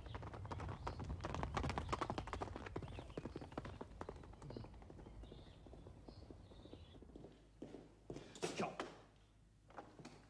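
Hoofbeats of a horse being ridden along a dirt track, a fast run of knocks that fades out about seven seconds in. A short breathy sound follows near the end.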